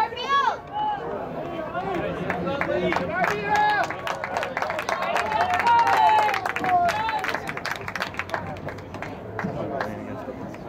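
Voices shouting across a soccer field during play, including one long drawn-out call about six seconds in, with scattered sharp claps or slaps through the middle.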